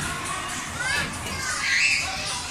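Children playing, a busy mix of young kids' voices calling out, with one child's loud high-pitched squeal near the end.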